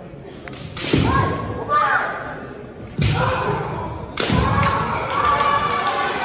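Kendo fencers' kiai: loud, drawn-out yells, with sharp thuds of stamping feet and bamboo shinai strikes on a wooden floor about a second in, at three seconds and just after four seconds, ringing in a large hall.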